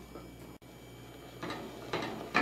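Faint room tone, then from about one and a half seconds in a wooden spatula starts stirring a wet mash of cassava and water in a stainless steel saucepan, a soft scraping and squelching.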